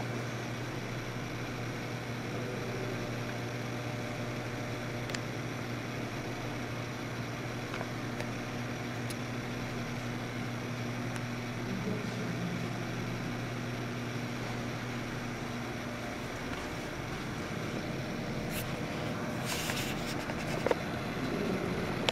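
Steady indoor room tone: a low mechanical hum under an even hiss of air noise. The hum drops away about sixteen seconds in, and a few faint clicks come near the end.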